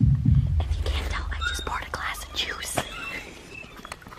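Hushed whispered talk between people. A deep, loud sound at the very start fades within the first second.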